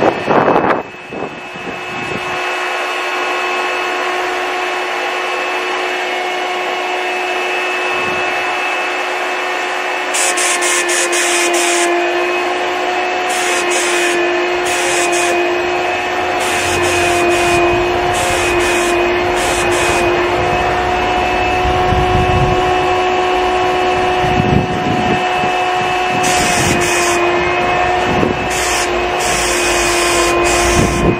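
A QT5 five-stage HVLP turbine sprayer starting up about a second in and running with a steady whine. From about ten seconds in, bursts of spray hiss come and go as the spray gun is triggered, and low wind rumble on the microphone joins in the second half.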